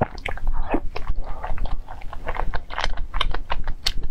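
A person chewing a mouthful of food close to the microphone: a quick, irregular run of clicking and smacking mouth sounds.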